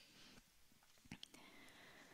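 Near silence: room tone in a pause between spoken sentences, with a faint short click a little past a second in.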